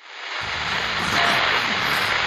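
Loud, steady rushing static noise that swells in about half a second in and then holds: a sound effect standing for the phone's radio interference.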